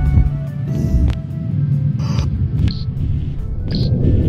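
Background music with a heavy low end and a few short, sharp high hits.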